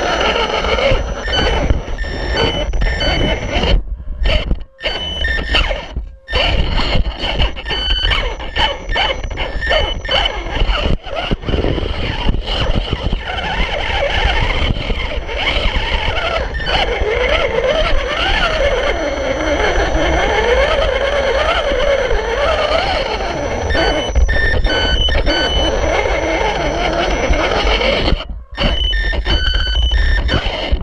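1/18 Losi Mini Rock Crawler's electric motor and gears whining as it crawls over rock, the pitch gliding up and down with the throttle, with tyres scraping. The sound cuts out sharply a few times, around four and six seconds in and near the end.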